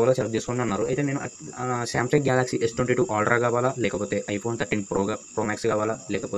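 A man talking in continuous narration, over a steady high-pitched hiss or whine in the background.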